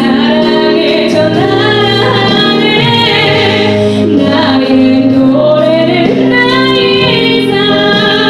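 A woman singing a Christian worship song solo through a microphone, with long held notes over a steady instrumental accompaniment.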